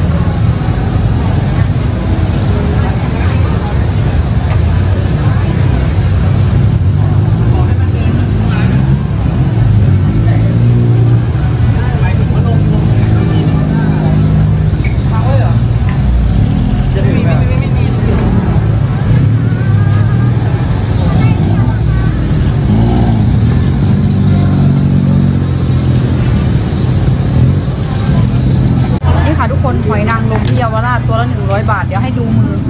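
Busy street ambience: a steady low rumble of road traffic with the voices of people passing by.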